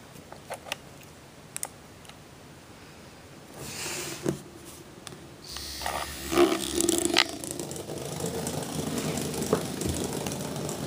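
Small battery-powered toy bots running on carpet: a few light clicks at first, then motor buzzing and scraping that starts about three and a half seconds in and grows louder and busier from about halfway.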